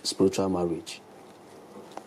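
A man's voice speaking for about the first second, then a pause with only faint, steady room hiss.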